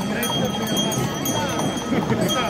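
Hooves of harnessed draft horses clopping on the street as they pull a wagon past, under the steady chatter of a crowd.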